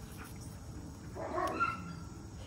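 A dog gives one short, faint pitched vocalization a little over a second in, while two young shepherd dogs play.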